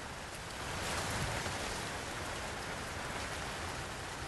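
Steady, even background hiss with no distinct events, swelling slightly about a second in.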